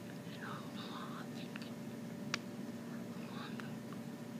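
Soft breathy mouth sounds and small clicks from a person signing, with one sharp click a little past halfway, over a steady low hum.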